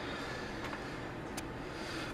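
Steady low background hiss of a quiet room, with one faint click about one and a half seconds in.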